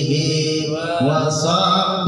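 A man singing sholawat into a microphone, drawing out long held notes in Arabic devotional chant. The note breaks off about halfway and a new, slightly rising note begins.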